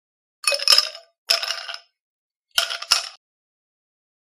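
Edited-in title-card sound effect: three short bursts of clinking with a ringing edge, separated by dead silence.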